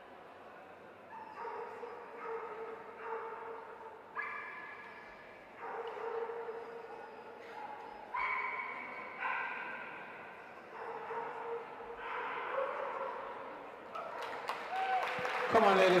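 A dog whining and yelping in a run of drawn-out, steady-pitched cries, each about a second long, coming every second or two.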